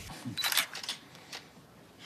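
Canon digital SLR camera shutter firing: a quick burst of crisp clicks about half a second into the clip, with a fainter click shortly after.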